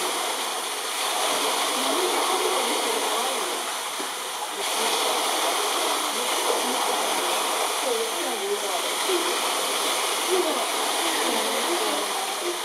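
Steady rush of running water, with faint voices chattering underneath.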